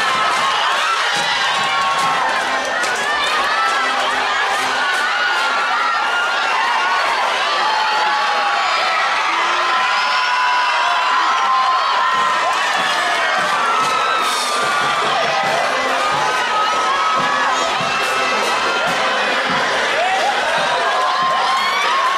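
A large crowd of spectators cheering and shouting without a break, many high voices calling over one another.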